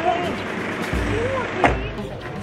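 A vehicle's engine rumbling low under people's chatter, with one sharp click about three-quarters of the way through.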